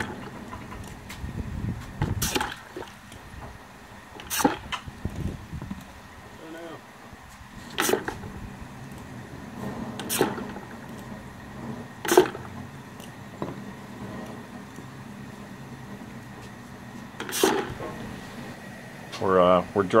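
Hot cast-lead ingots being quenched in a plastic bucket of water, clinking against one another and the bucket as they go in and are handled with tongs: several sharp clinks a couple of seconds apart. The quench hardens the lead.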